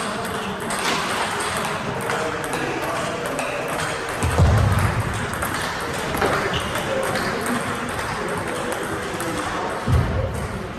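Table tennis balls clicking off bats and tables, several tables at once, amid the chatter of a busy hall. A low thud sounds about four and a half seconds in, and another at the very end.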